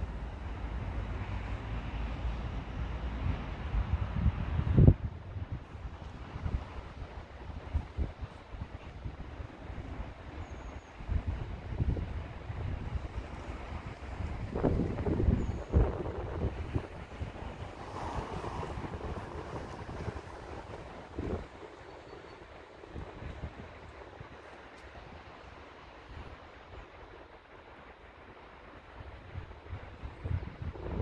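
Wind buffeting the microphone in gusts, a rough low rumble that is heaviest in the first five seconds and eases off over the last third, with a few short thumps, the loudest about five seconds in.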